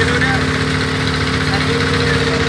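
A motor running steadily at idle: an even, unbroken hum with voices faint behind it.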